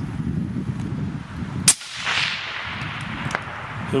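A single shot from a suppressed .260 Remington bolt-action rifle fitted with a Jaki suppressor, about two seconds in, with a sharp report followed by an echo that fades over a second or so. A steady low rumble runs underneath.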